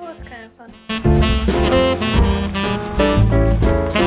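Jazz-style background music starts suddenly about a second in, loud and lively, after a brief voice.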